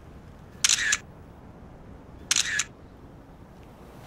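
Smartphone camera shutter sound, going off twice about a second and a half apart as selfie photos are taken.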